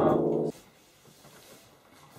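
The end of a lo-fi garage rock song: a held chord that stops abruptly about half a second in, followed by near silence with faint room noise.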